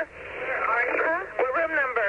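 Recorded 911 emergency call: a voice on the telephone line, with the thin, narrow sound of a phone connection.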